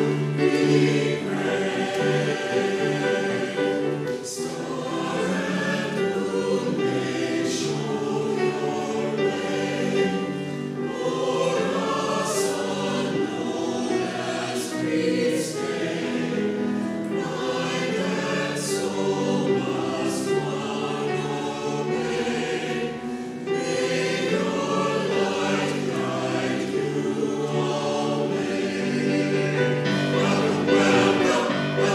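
Mixed choir of men's and women's voices singing in parts, holding steady chords that change every second or so, with a sung 's' hissing now and then.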